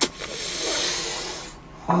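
A person's long breathy exhale, like a sigh or air blown out through the mouth, swelling and fading over about a second.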